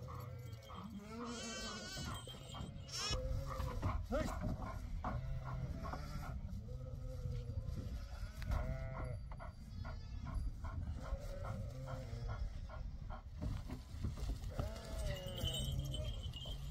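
A flock of sheep and lambs bleating, many short calls overlapping one after another.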